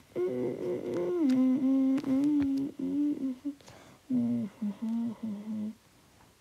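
A child humming a tune in long held notes, in two phrases with a short break in the middle.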